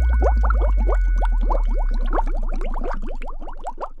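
Underwater bubbling sound effect: a rapid stream of short rising blips, several a second, over a deep bass drone, all fading out near the end.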